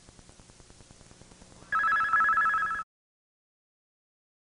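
Faint rapid ticking, then about halfway a loud electronic two-tone warbling ring, like a telephone ringing. It lasts about a second and cuts off abruptly.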